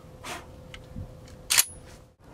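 Handling noise from a 12-gauge pump-action shotgun held in the hands: a few faint clicks and rustles, with a short louder clack about one and a half seconds in.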